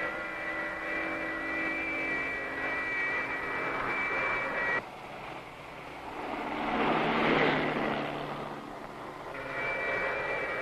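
A steady, high, jet-like whine, a film's flying sound effect, which cuts off abruptly about five seconds in. A rush like a car passing rises and falls, and the whine comes back near the end.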